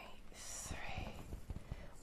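A woman's quiet breath and faint whispered muttering over low room noise, with a soft hiss about half a second in.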